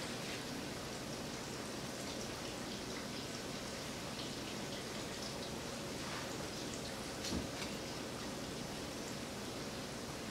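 Steady faint hiss, with a few light clicks and a soft thump about seven seconds in.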